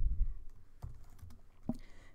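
Computer keyboard keystrokes while code is typed: a handful of separate, irregular clicks, with a low bump right at the start.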